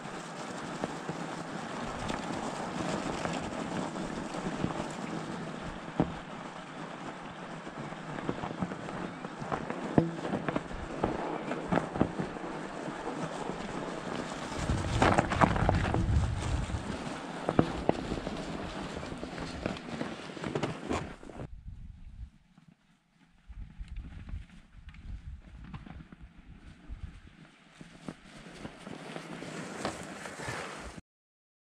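Electric fat-tire bike riding through shallow snow: steady rolling noise from the tires with scattered knocks and rattles, and wind on the microphone, louder for a moment about fifteen seconds in. About twenty seconds in it cuts off abruptly, leaving quieter wind gusts on the microphone.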